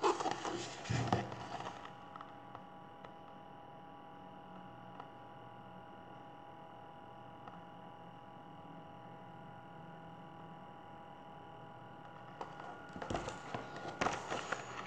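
A paperback picture book is handled and lifted, paper and cover rustling for about two seconds. A quiet steady hum with a few held tones follows, then more rustling and handling near the end as the book is lowered.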